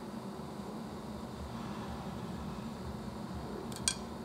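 Steady low background hum and hiss of room noise, with one short, sharp click just before the end.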